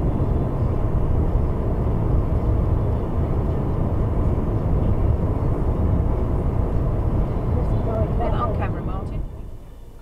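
Steady road noise inside a car cruising at about 56–58 mph: tyre and wind noise with the engine underneath. It falls much quieter about nine seconds in.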